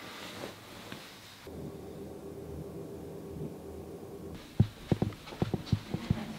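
Electric roller shutter motor humming steadily for about three seconds, starting a second and a half in, as the shutter rises. Near the end come several sharp knocks of footsteps on a wooden floor.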